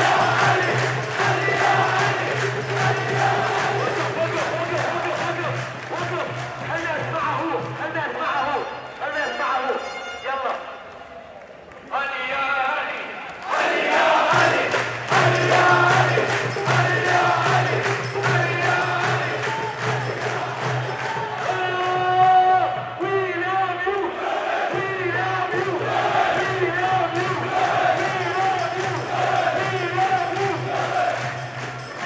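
Fan chant: many male voices singing together over a steady drum beat. The beat drops out for a few seconds about a third of the way in and briefly again near three-quarters.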